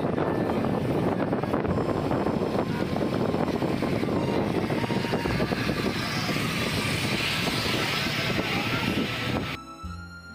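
Steady noise of a moving river passenger boat: engine, water and wind buffeting the microphone. It cuts off abruptly near the end, giving way to soft background music.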